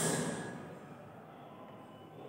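Chalk writing on a blackboard: a sudden hiss at the start that fades over about a second, then faint scratching as the chalk moves.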